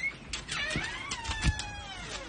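A dog whining in high, wavering notes that slide down in pitch, with a few short knocks.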